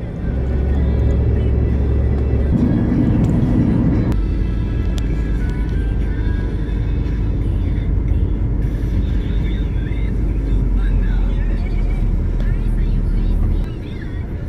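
Low road and engine rumble inside a moving taxi's cabin, with music and indistinct voices over it. The rumble drops away near the end.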